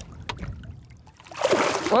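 A walleye splashing at the water's surface as it is let go from a hand over the side of a boat. The short burst of splashing comes near the end, after a fairly quiet start.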